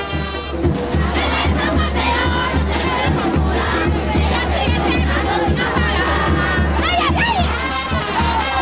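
A dense crowd of many voices shouting and cheering all at once, with a few shrill whoops near the end. Brass band music cuts off about half a second in.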